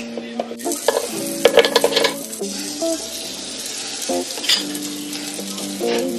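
Butter and waffle batter sizzling on the hot plates of an electric waffle maker, with a spoon clinking and scraping. The crackling is loudest between about one and two seconds in.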